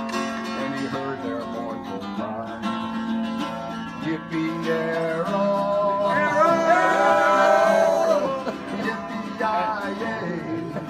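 Strummed acoustic guitar accompanying a country-style song, with a voice holding a long sung note about six to eight seconds in.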